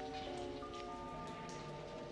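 Quiet background music: a soft, sustained synth chord, with higher notes joining about half a second and a second in, over a faint rain-like hiss and patter.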